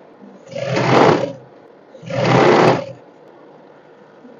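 Sewing machine stitching in two short runs of about a second each, each one speeding up and then stopping.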